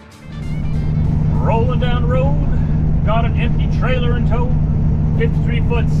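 Steady drone of a semi truck's diesel engine and road noise heard inside the cab at highway speed, fading up about half a second in. A voice is heard in short stretches over it.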